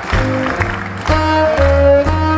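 Live jazz quintet playing an instrumental passage: a horn, saxophone-like, holds long notes from about a second in over the bass line.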